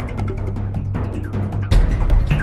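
Background music with a steady low bass and sharp percussive strokes; a heavier, louder hit lands near the end.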